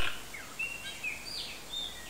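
Birds chirping in the background: several short, high whistled notes, some falling in pitch, over a steady outdoor hiss. The first moment holds the fading tail of a loud noise burst.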